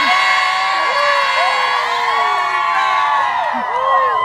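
A crowd of young people cheering and whooping together, many voices shouting at once.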